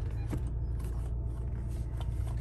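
2017 Volkswagen Golf R's turbocharged 2.0-litre four-cylinder idling, a steady low hum heard inside the cabin.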